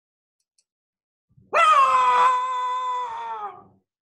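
A loud, drawn-out roar starting about a second and a half in, imitating a big animal. It holds one pitch, then slides down as it fades out after about two seconds.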